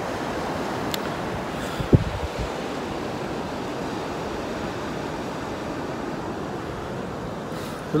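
Steady sound of surf breaking on a sandy beach, mixed with wind buffeting the microphone. A brief thump sounds about two seconds in.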